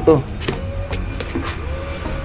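Small boxes shifting and scraping inside a packed shipping carton as a hand reaches in, with a couple of sharp clicks about half a second in over a low rumble of phone handling.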